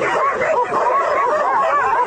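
A pack of dogs barking and yelping together, many short barks overlapping without a break.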